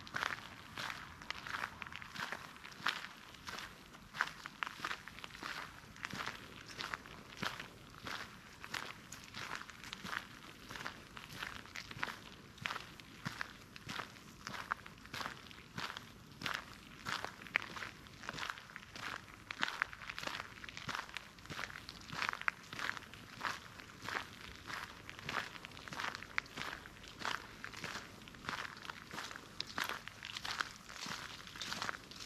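Footsteps on a gravel path strewn with fallen dry leaves, at a steady walking pace of about two steps a second, each step a short rustling crunch.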